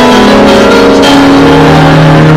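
Loud recorded dance music played over the hall's sound system for a stage routine, carrying long held notes.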